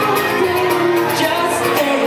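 Live male vocals with acoustic guitar: a man singing pop and hip-hop songs over guitar chords, with the room's echo.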